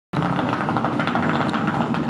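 Wheeled suitcase rolling over brick block paving: a loud, steady, fast rattle from the wheels, starting suddenly.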